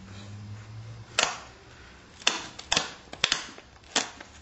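Sharp stone-on-flint clicks as a hammerstone works the edge of a flint Clovis preform, preparing a striking platform. There are about six irregular clicks: one about a second in, and the rest bunched near the end.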